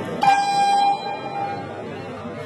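An electronic competition buzzer sounds once: a steady, horn-like tone that is loud for under a second and then fades away over the background noise of the hall.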